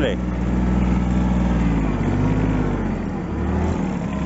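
The Kubota's engine running steadily, its pitch dropping a little about two seconds in and again about three seconds in.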